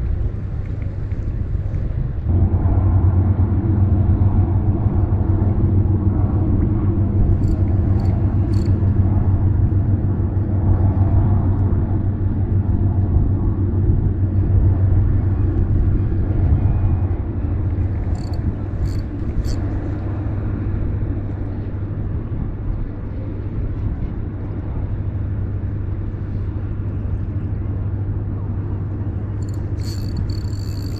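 Low, steady engine hum that builds about two seconds in and slowly fades through the second half. Two brief sets of three faint high clicks come about a quarter of the way in and again just past halfway.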